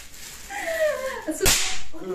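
A throw-down snap firecracker (bang snap) goes off once against the floor about one and a half seconds in: a single sharp crack followed by a brief hiss.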